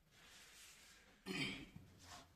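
A person clears their throat once, briefly, a little over a second in, over faint room hiss.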